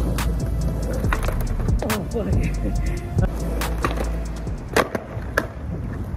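Skateboard wheels rolling on rough asphalt, with several sharp clacks of the board being popped and landed.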